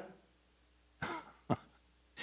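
Throat clearing: a short breathy rasp about a second in, then a brief sharp cough half a second later.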